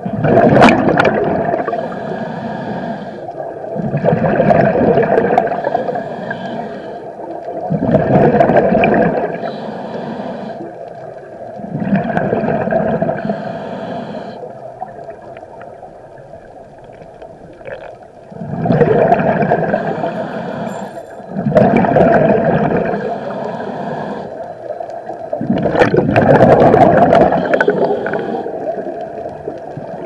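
Scuba regulator breathing heard underwater: loud swells of exhaled bubbles gurgling past the microphone about every four seconds, with quieter gaps between breaths and a longer lull around the middle.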